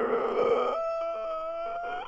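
A rooster crowing once: a rough opening burst, then a long held note that rises slightly in pitch.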